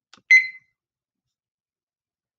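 A faint click, then one short, high electronic beep that fades quickly: a countdown timer being started for a timed work period of a minute and a half.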